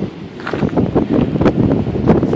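Wind buffeting the microphone in loud, uneven gusts.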